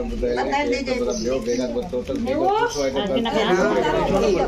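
Several women's voices talking over one another: busy chatter.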